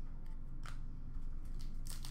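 A few faint taps and rustles of hockey trading cards being handled and set down on sorted piles, over a low steady room hum.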